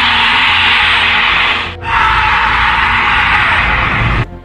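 A very loud, harsh noise from the bushes, in two long blasts of about two seconds each with a brief break just before two seconds in. It is the same sound both times, typical of a played recording rather than an animal.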